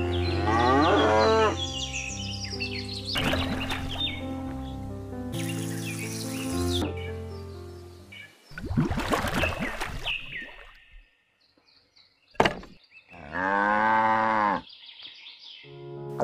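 Background music for about the first half, then a few separate sound effects and a click, and near the end a single cow moo lasting over a second.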